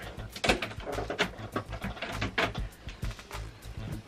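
Background music with a steady low bass, under irregular clicks and knocks from a canister being handled and pulled out of a plastic mail tube.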